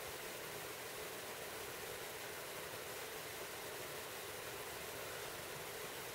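Faint steady hiss with no distinct sounds: background noise of the recording.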